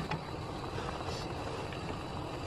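Pot of dumpling and rice-cake soup at a rolling boil: steady bubbling and simmering noise, with a short click at the start.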